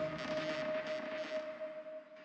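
Eerie ambient drone: a single held tone over a soft hiss, slowly fading.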